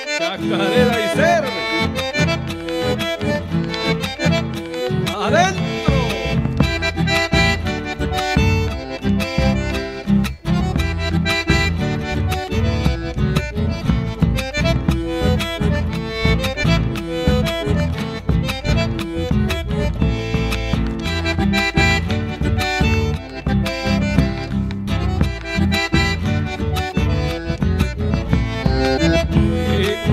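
Chacarera music led by a piano accordion, with a steady rhythmic beat; a fuller low rhythm section comes in about six seconds in.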